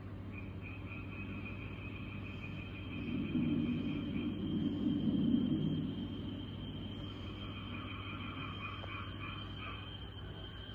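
High-pitched, pulsed chirping trill of a small calling animal, in two runs: the first fades out about four seconds in and the second starts near eight seconds. A steady high tone and a low hum run underneath, and a louder low-pitched rumble swells in the middle.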